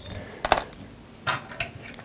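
A single sharp, light click about half a second in, a small hard object knocked or set down while fly-tying tools are handled, then quiet room tone with one brief soft sound.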